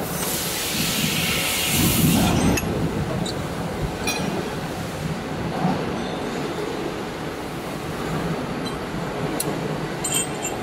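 Steel roller and spacer of a roll forming machine being slid along their shaft by hand: a bright metallic scraping hiss for the first two and a half seconds that stops suddenly, then a few light metal clinks.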